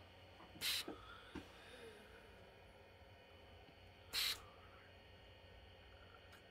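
Two short breaths through the nose close to the microphone, about three and a half seconds apart, with a few faint clicks between them.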